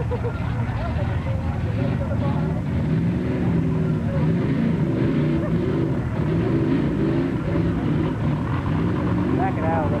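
Motor-vehicle engines running with a loud, steady drone whose pitch wavers up and down, mixed with voices of spectators.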